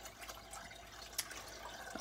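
Faint, steady trickle of water circulating in a small hydroponic fish-tank garden, with one brief click about halfway through.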